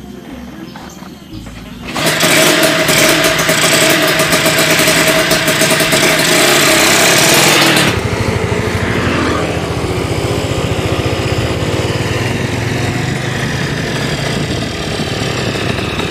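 Small dirt bike engine running loudly with a fast, even beat from about two seconds in, then carrying on at a somewhat lower level as the bike rides along the road.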